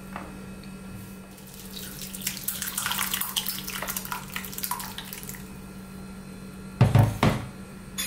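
Thick, milky sunflower-seed liquid poured from a plastic tub through a plastic sieve into a bowl, splashing for about three seconds. Two loud knocks half a second apart come near the end.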